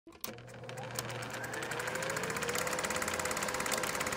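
Film projector sound effect: a rapid, even mechanical clatter starting suddenly just after the beginning and growing louder, with a hum that rises in pitch as it comes up to speed and then holds steady.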